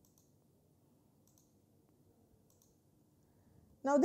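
Near silence: quiet room tone with three faint clicks about a second and a quarter apart.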